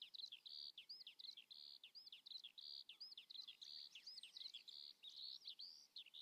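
Faint birdsong: a steady run of short chirps, about two a second, as a park ambience bed.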